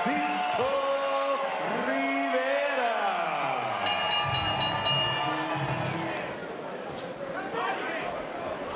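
Arena ring announcer's amplified voice, drawing out the winner's name in long held, sliding syllables over crowd noise.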